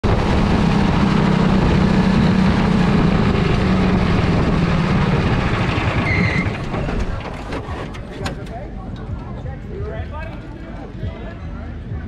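Quarter midget race car's single-cylinder engine running close to the onboard camera with a steady drone, dropping away sharply about six and a half seconds in. Faint voices follow.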